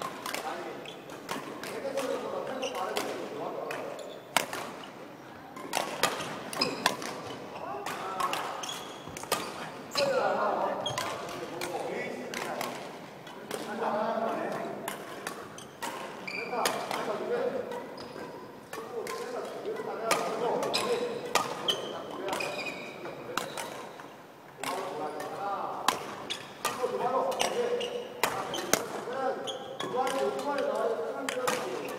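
Badminton rackets hitting shuttlecocks over and over in a feeding drill: sharp, irregular hits about every half second to a second, echoing in a large gym hall over voices talking.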